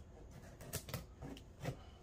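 Knife blade slitting the packing tape on a cardboard mailing box: a handful of faint, short scratchy clicks spread through the two seconds.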